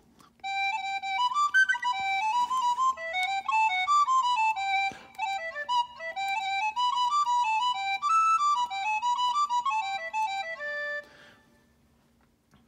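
Synthesized Celtic wind-instrument sound from an iPad MIDI sound-module app, played live from a WARBL wind controller: a quick single-line folk melody of rapidly changing notes that stops about a second before the end.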